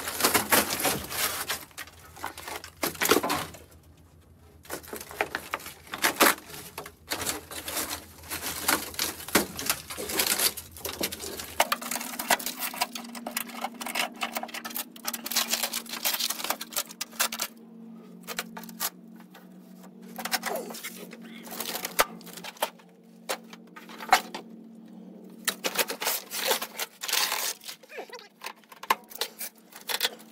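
Rusted sheet-metal body panels of a 1965 VW Beetle being pulled and broken off by hand: irregular crackling, crunching and scraping, with scattered clicks from flakes of rust falling.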